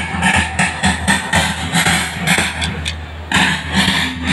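March music with a steady, evenly repeating drum beat, played over loudspeakers, with a steady low hum underneath.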